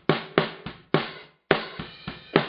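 Snare-microphone drum recording with kick drum bleeding through, played through a noise gate: about six sharp drum hits, each tail cut short, with brief silences where the gate shuts. The gate threshold is still low enough that the kick bleed keeps opening it.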